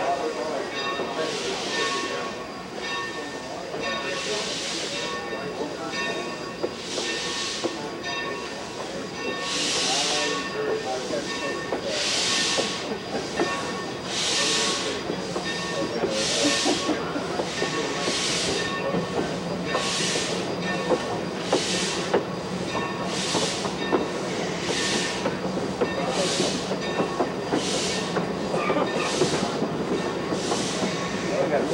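Steam locomotive No. 30, a 2-8-2 Mikado, chuffing with its exhaust, heard from a passenger car down the train. The beats come steadily closer together as the train picks up speed, over the rumble of the cars rolling on the rails.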